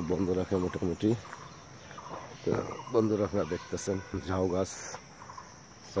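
A man talking in two short spells, over a faint, steady, high insect chirring.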